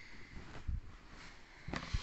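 Fabric rustling as a basted polka-dot dress is handled and turned right side out, with a soft bump about two-thirds of a second in and another near the end.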